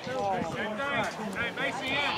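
Indistinct voices of people talking at a distance, with no words clear enough to make out.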